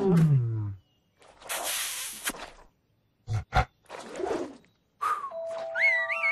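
Cartoon monster roar that drops in pitch and cuts off in under a second, followed by a hissing rush, two quick knocks and another short growl. Near the end, cartoon music starts with a rising whistle-like glide.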